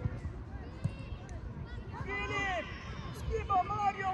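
High-pitched children's voices calling out, one short call about halfway through and more from near the end, over a low, uneven rumble of wind or handling noise on the microphone.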